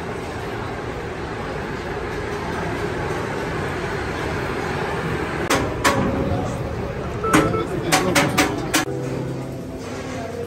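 Steady crowd chatter. From about halfway there is a run of sharp clacks and one short electronic beep: a turnstile's ticket scanner and its mechanism as people pass through.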